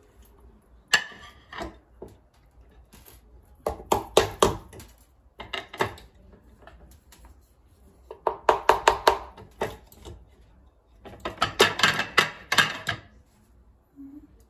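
Bursts of rapid knocks and clinks: a knife rapping on an upturned metal flan mold set on a ceramic plate, to loosen a flan that is stuck inside. There are four or five bursts of quick strikes, with short pauses between them.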